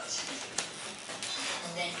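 Speech from a television cooking programme playing in the background, with one sharp click about half a second in.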